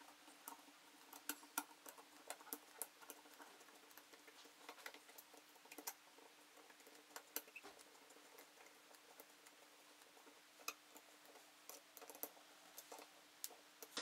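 Faint, irregular small clicks of a hand screwdriver turning and seating the small steel screws in a Single Action Army replica revolver's grip frame.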